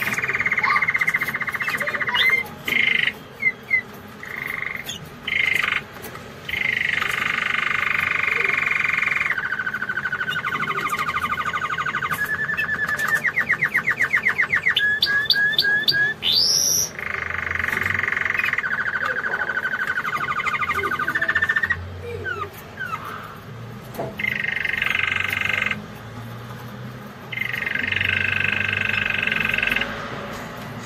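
Canary singing: long rolling trills, each held for one to three seconds with short breaks between them. Midway there is a run of fast separate notes ending in one steep rising whistle.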